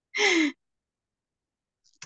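A person's short breathy vocal sound, falling in pitch like a sigh, lasting about half a second near the start.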